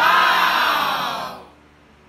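A loud, drawn-out voice call lasting about a second and a half, its pitch falling slightly before it fades out.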